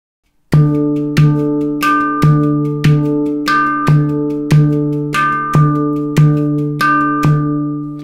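Victor Levinson steel handpan tuned to a D minor scale, played by hand in a Khaliji groove: accented notes on the right hand, softer ghost notes on the left. The strokes start about half a second in and fall in a steady repeating rhythm, each note ringing on with bright metallic overtones under a deep low tone, and the last note rings out near the end.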